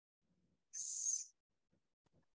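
One short, high hiss lasting about half a second, a little under a second in, over otherwise faint room sound.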